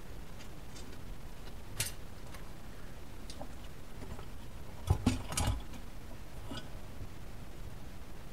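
Handling noises from a car's engine computer (PCM) and its metal mounting bracket being turned over and set down on a workbench: a sharp click about two seconds in, a few faint ticks, and a louder cluster of knocks about five seconds in.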